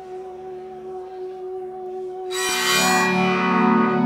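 Live music on a small stage: a steady, held note that swells much louder and brighter a little over two seconds in.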